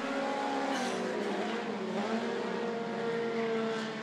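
Several four-cylinder mini stock race cars running hard together on a dirt oval: a steady engine drone whose pitch wavers a little as the cars pass.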